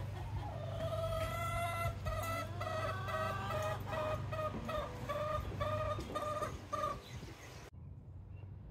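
Backyard chickens clucking: a hen's repeated calls, evenly paced at about two a second, over a steady low hum. The sound cuts off abruptly near the end.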